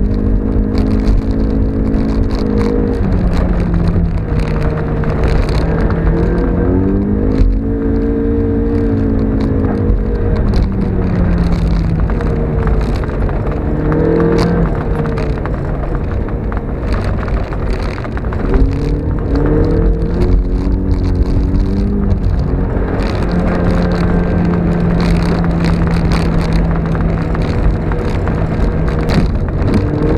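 Mazda MX-5's four-cylinder engine heard from inside the cabin as it is driven on snow, its revs climbing and dropping several times, with a steady stretch near the end. Under it runs a constant rush of tyre and road noise.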